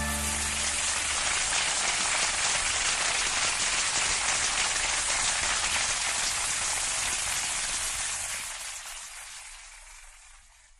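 Audience applause as the band's last chord dies away: dense steady clapping that fades out over the last two seconds.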